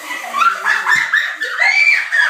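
High-pitched wordless squeals, with one long squeal near the end that rises and then falls.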